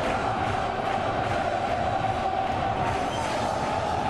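Football stadium crowd singing and chanting in celebration of the home side's goal: a steady mass of voices with a held sung note running through it.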